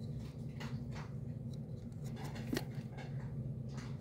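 Faint light ticks and scrapes of glossy trading cards being handled and one card flipped over, over a steady low background hum.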